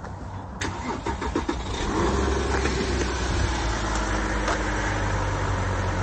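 A sharp knock about half a second in, with a few rattling clicks after it, then a car engine running steadily from about two seconds in.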